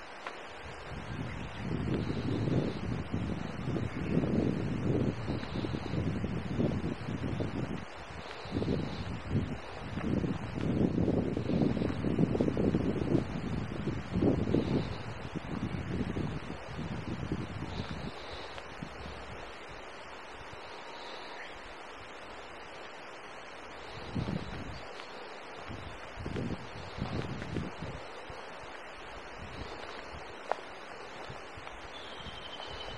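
Wind gusting over the camera microphone outdoors, a low rumbling buffet that comes and goes. It is strongest through the first half, dies down, and returns briefly near the end.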